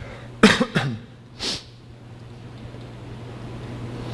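A man coughs into his fist: a sharp cough about half a second in, then a shorter, breathier one about a second later.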